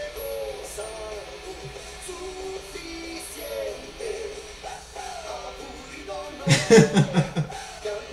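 A man sings a Spanish-language rock cover of an anime opening theme over a band. Near the end a man laughs loudly in a quick run of short bursts.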